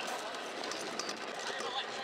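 Stunt scooter wheels rolling over rough tarmac, a steady grinding rumble, with faint voices in the background.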